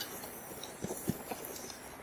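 Fat-tyre electric bike rolling slowly over thick grass: a faint steady rumble of tyres, with a few light knocks about halfway through as it goes over bumps.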